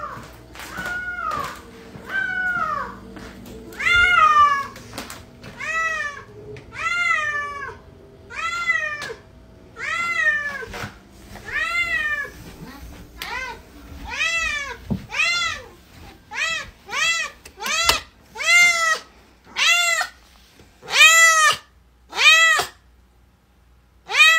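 A domestic cat meowing over and over, about one meow a second. Each call rises and falls in pitch. The meows come quicker and louder in the second half.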